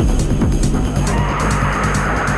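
Hard techno playing in a DJ mix: a heavy, steady low end with fast, even hi-hat ticks. About a second in, a harsh, noisy synth layer swells in over the beat.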